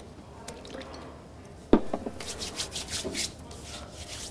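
A sharp click from a plastic lotion bottle a little before halfway, then a run of short, wet squelching and rubbing strokes as lotion is squeezed out and worked between the hands for a foot massage.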